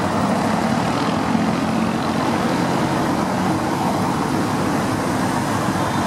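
Steady, dense road traffic: cars and vans driving past on a cobblestone roundabout, with engine hum and tyre noise blending into one continuous rumble.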